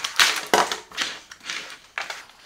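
Handling noise as a keyboard and a fabric mouse pad are moved and set down on a wooden desk: a run of short knocks and rustles, about one every half second, the loudest just after the start.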